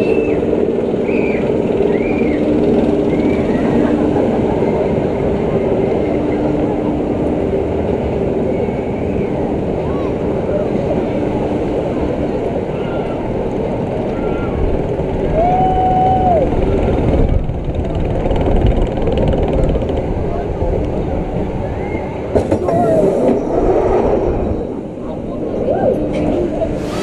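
Fabbri drop tower ride in motion: a steady mechanical rumble from the ride's chain-driven gondola as it climbs, drops and returns, with riders' voices calling out over it.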